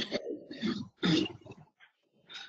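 A person clearing their throat in two short bursts.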